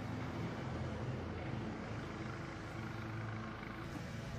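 An engine running steadily, a constant low hum with a wash of noise over it.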